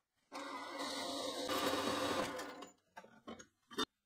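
Metal-cutting band saw running for about two and a half seconds as its blade finishes a cut through a round steel tube, then dying away. A few sharp metallic knocks follow near the end as the cut tube is handled.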